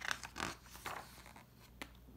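A page of a hardcover picture book being turned by hand: a few quick papery swishes and rustles in the first second, then a light tap near the end as the page settles.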